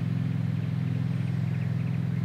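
Steady low drone of an idling engine, unchanging throughout.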